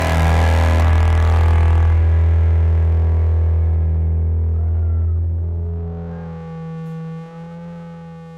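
A rock band's final chord ringing out: a loud held low bass note under a sustained electric guitar chord, the top of the sound fading away over the first few seconds. The low note drops out about six seconds in, leaving a quieter steady drone of held tones.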